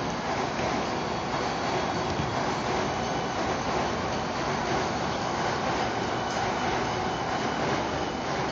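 Steady, even rushing noise with no distinct events.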